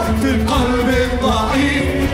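Live worship band playing an Arabic praise song, with keyboard, guitars, oud and drum kit, and voices singing over it.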